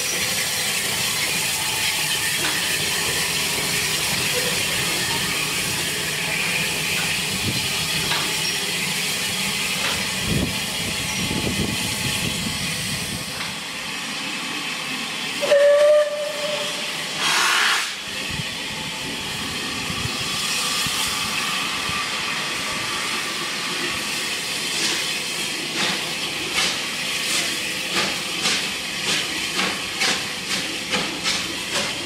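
Bulleid unrebuilt West Country Pacific steam locomotive 34007 'Wadebridge': a steady hiss of steam, then two short whistle blasts about halfway through. Near the end, exhaust beats quicken as it starts away.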